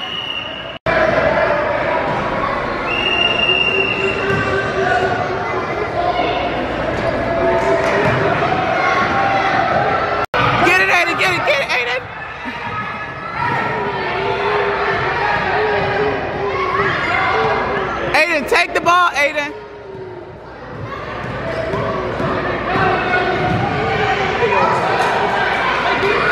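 Basketballs bouncing on a hardwood gym floor among the chatter and shouts of players and spectators, echoing in a large hall.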